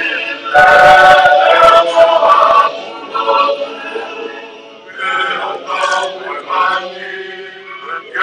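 Large group of voices chanting and singing together for a Pacific island cultural dance, a long, loud phrase about half a second in, then softer, shorter phrases.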